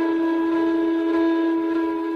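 Indian flute holding one long, steady note in slow meditation music. The note settles after a downward slide just before and carries on unchanged.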